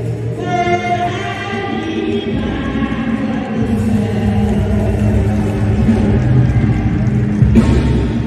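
A church choir singing a jubilee song in Bambara, led by a female soloist singing into a microphone, with the choir voices sustained underneath.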